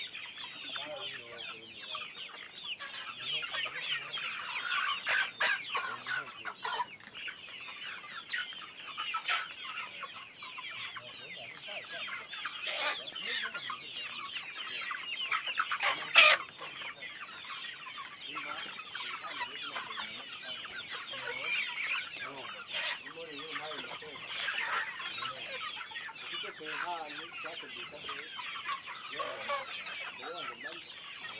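A large flock of local free-range chickens clucking continuously, many birds calling over one another. A few sharp knocks cut through, the loudest about halfway through.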